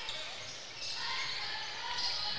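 Gym ambience during a basketball game: a steady crowd murmur, with a basketball being dribbled on the hardwood court.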